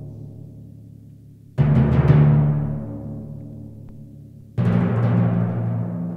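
Timpani and pipe organ playing together: two loud struck accents, about a second and a half in and again about four and a half seconds in, each ringing out and dying away over sustained low notes.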